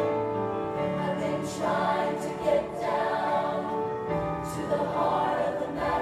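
Mixed-voice choir of women and men singing in harmony, with long held notes.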